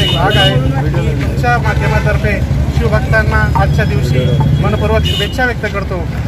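Men's voices talking close by over a steady low rumble of road traffic.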